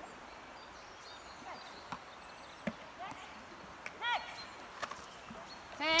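Quiet outdoor field ambience with a few faint short calls and light taps, then a voice starts counting down the remaining seconds at the very end.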